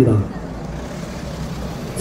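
Street traffic: a car's engine and tyres as it drives by, a steady low rumble in the pause.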